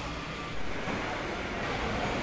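Steady low background rumble and hiss of a busy open-fronted food court's ambience, with no distinct event standing out.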